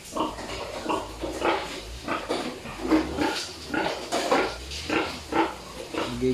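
Sow in a farrowing crate grunting, a steady run of short grunts about two or three a second.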